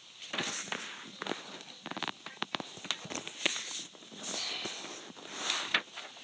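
A sheet of paper rustling and crackling in the hands as it is folded and creased, in a string of short crinkles and clicks.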